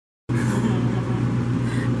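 Steady machine hum and rush of air from commercial kitchen equipment, cutting in suddenly about a quarter second in and holding level.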